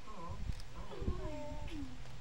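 A toddler's high-pitched wordless vocalizing: several short calls that waver and slide down in pitch, with a couple of briefly held notes.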